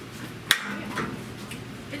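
A single sharp click about half a second in, with a few much fainter ticks after it, over a low steady hum.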